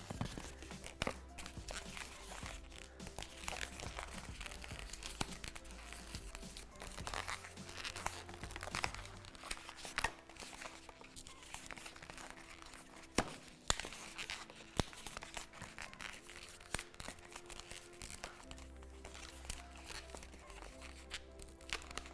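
Long gold latex modelling balloon squeaking and crinkling in irregular rubs and snaps as it is twisted and pinch-twisted by hand, over soft background music.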